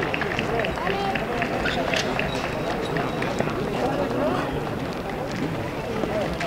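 Indistinct background chatter of several voices, steady throughout, with faint scattered clicks.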